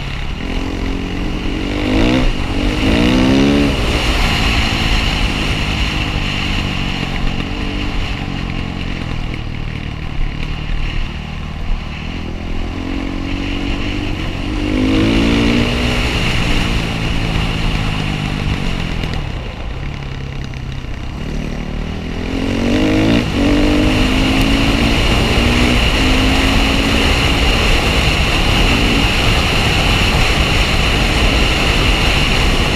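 Off-road motorcycle engine running under the rider, rising in pitch as it revs and accelerates in three surges: near the start, about halfway, and about three-quarters of the way in.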